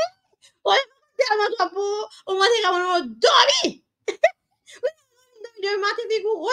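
A woman's voice preaching in long, emphatic, drawn-out phrases, with held notes and a falling slide in pitch about three and a half seconds in.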